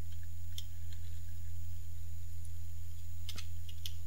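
Computer mouse clicking a few times, sharp single clicks about half a second in and twice near the end, over a steady low electrical hum.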